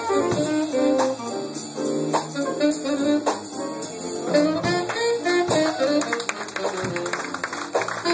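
Live jazz band playing, with saxophones carrying the melody over guitar and drums. The drumming gets busier in the last few seconds.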